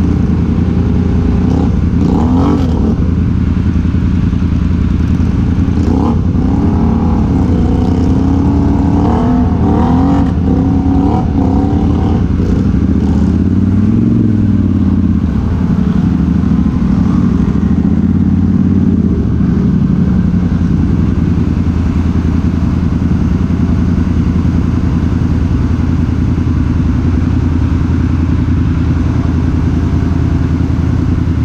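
ATV engines in deep mud: one engine revs up and down repeatedly as the quad pushes through the mud hole, over the steady running of another ATV nearby. The revving dies away after about twenty seconds, leaving the steady engine note.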